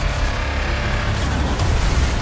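Action movie trailer soundtrack: a loud, steady low rumble of destruction sound effects mixed with music.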